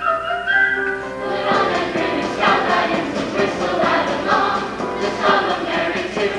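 Show choir singing in chorus over instrumental backing; held notes give way about a second and a half in to a busier section with a steady beat.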